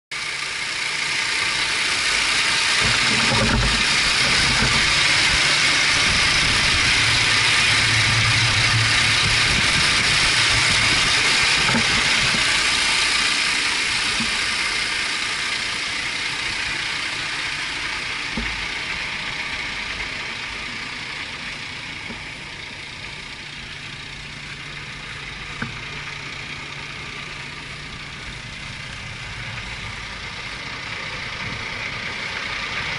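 The diesel engine of an International ProStar semi tractor idling steadily with its hood open. The sound grows quieter about halfway through as the listener moves from the engine bay to the rear wheels, and one sharp click comes near the end.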